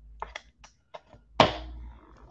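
Trading cards and a rigid plastic card holder being handled: a few light clicks and taps, then one louder knock about a second and a half in.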